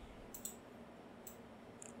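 A few faint computer mouse clicks over quiet room tone.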